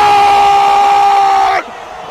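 A radio football commentator's long held goal cry: one loud, steady shout that breaks off about a second and a half in, then a short breath before the next shout begins at the end.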